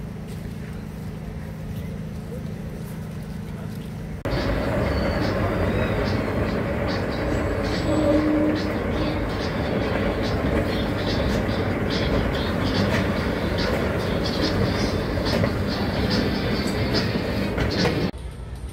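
An escalator running, a steady mechanical rattle with many small clicks, joined by voices. It starts suddenly about four seconds in, after quieter outdoor ambience with a low hum.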